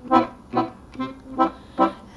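Recorded music played through a homemade two-way loudspeaker with a hardware-store ribbon tweeter: five short instrumental notes, about two a second, in a pause between sung lines.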